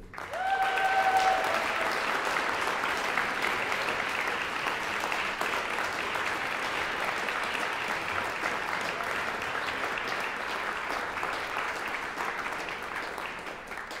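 Audience applauding steadily in a large hall, fading out near the end.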